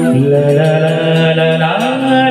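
Male singer holding long, steady notes into a microphone over live band accompaniment, the pitch stepping up near the end.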